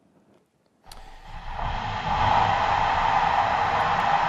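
Fire hose stream flowing 180 gallons per minute at 50 psi, spraying water across a test room: a steady rushing noise that starts with a click about a second in and builds up over the next second.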